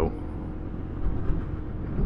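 Steady wind and low road rumble on a helmet-mounted microphone as a Honda ADV150 scooter picks up speed, a little louder after about a second; the scooter's engine is barely heard under the wind.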